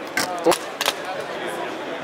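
A lightweight plastic Nokia 8110 feature phone dropped onto a hard floor: a few sharp knocks as it lands and bounces, the loudest about half a second in, over crowd chatter.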